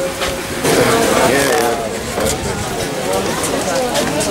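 Several people talking at once: overlapping voices of a crowd.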